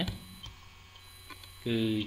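A voice speaking, with a pause of about a second and a half in the middle. In the pause only a low steady mains hum and a couple of faint computer-mouse clicks are heard.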